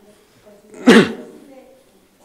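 A single loud cough about a second in.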